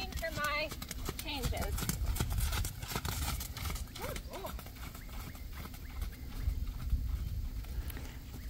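A horse trotting on sand arena footing: a run of soft, even hoofbeats.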